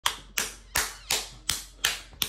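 Hands clapping in a steady rhythm, six sharp claps in two seconds, a little under three a second.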